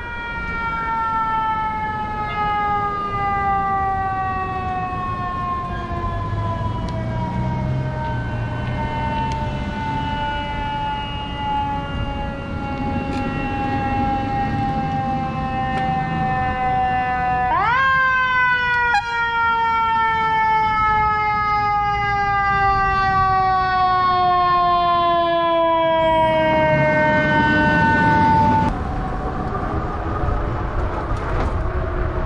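Mechanical fire siren winding down slowly in pitch, spun back up once partway through and winding down again, then cut off near the end. Low traffic rumble underneath.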